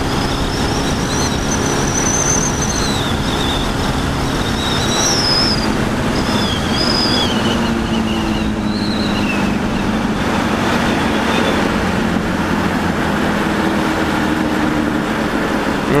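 Sport motorcycle engine running steadily at highway cruising speed, mixed with heavy wind rush on the onboard microphone. A few thin, wavering high whistles come through in the first half.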